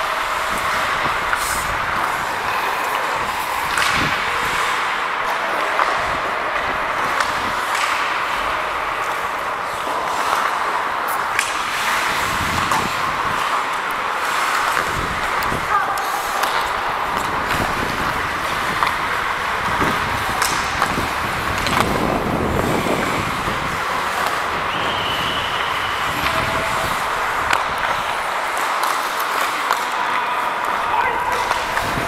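Ice hockey in play, heard up close from the referee on the ice: a steady scrape of skate blades on ice with sharp clacks of sticks and puck every few seconds, and indistinct players' voices.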